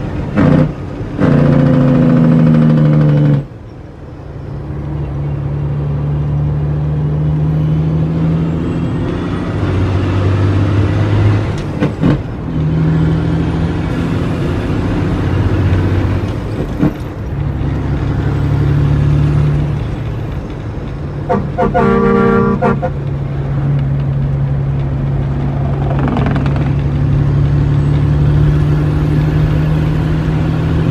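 Heavy truck's diesel engine running under way, heard from inside the cab. Its pitch steps down and up several times as it shifts gears, and it is louder for the first few seconds. A short horn toot sounds about three-quarters of the way through.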